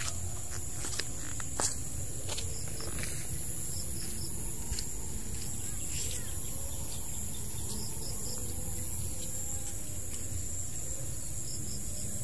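Steady insect chorus of two shrill, unbroken high tones, over a low steady rumble, with a few sharp clicks in the first few seconds.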